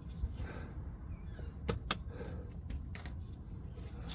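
Small plastic clicks and snaps from a BMW E46 coolant level sensor being twisted and popped out of and into its socket, the two sharpest clicks close together a little under two seconds in, over a low steady hum.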